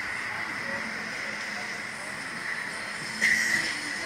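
Steady rushing noise in a moving Slingshot ride capsule, with a short high-pitched cry about three seconds in.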